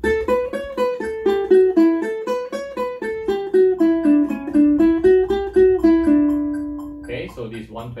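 Ukulele plucked one note at a time with alternating index and middle fingers: a D major scale exercise (A Mixolydian into D Ionian) in even eighth notes at 120 bpm, about four notes a second. The line moves mostly downward and ends on a held note about six seconds in.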